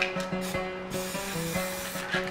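Aerosol spray paint can spraying in a steady hiss, starting about halfway through, over background music.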